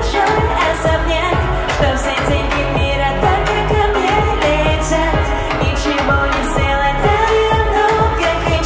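A woman singing a pop song into a handheld microphone over an amplified backing track with a steady drum beat and heavy bass.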